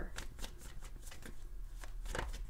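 A deck of tarot cards being shuffled by hand: a quick, even run of soft card flicks, about five or six a second.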